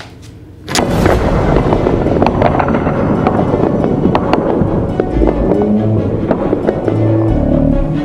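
Wooden Jenga tower collapsing suddenly under a second in, blocks clattering onto a wooden table, followed by a dense run of wooden clatter with music over it.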